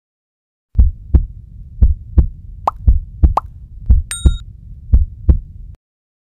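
Heartbeat sound effect: six paired lub-dub thumps about once a second over a low hum. Two short higher blips come around three seconds in and a short bright ding just after four seconds, and the sound cuts off abruptly near the end.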